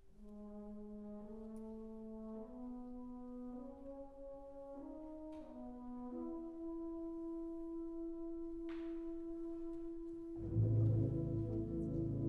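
A brass band playing a quiet, slow opening: a few sustained notes layered and moving step by step in pitch. About ten and a half seconds in, the full band comes in much louder, with deep bass underneath.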